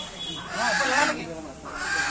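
Two harsh animal calls about a second apart.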